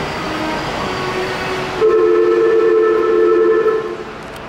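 Loud, steady two-note signal tone on a Disney Resort Line monorail platform beside the stopped train. It starts about two seconds in and holds for about two seconds before cutting off. Before it there is only the station's steady background sound.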